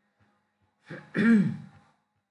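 A man clears his throat once, a short voiced 'ahem' about a second in.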